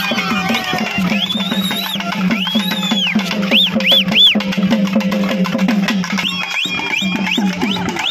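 Festival drumming with a fast, steady beat over a constant low tone, for a dancing crowd. Shrill whistles from the crowd rise and fall above it, with three quick ones about four seconds in.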